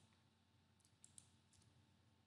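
Near silence: room tone, with a few faint computer clicks about a second in as the lecture slide is advanced.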